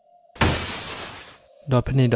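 A sudden crash of shattering glass, a sound effect, that starts about a third of a second in and fades away over about a second.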